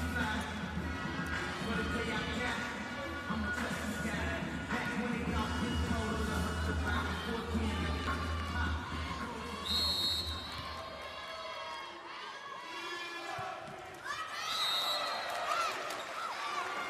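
Music playing over an arena PA between points, with crowd noise underneath. The heavy bass drops out about eleven seconds in, and there is a short high tone near ten seconds.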